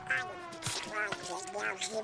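Donald Duck's squawky, quacking voice grumbling in short angry bursts over an orchestral cartoon score.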